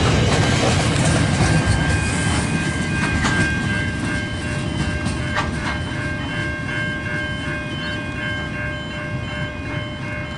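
Grain hopper wagons rolling past on steel rails, the wheels clacking over rail joints, the rumble fading as the last wagon goes by and moves away. Level crossing warning bells ring steadily through it.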